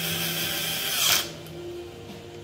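Cordless electric screwdriver spinning a valve cover bolt on a BMW R1250GS boxer engine. It whirs for about a second, gets loudest just before it stops, then cuts off.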